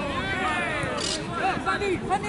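Several people's voices calling out and talking over one another: football players on the pitch, with one long call falling in pitch near the start.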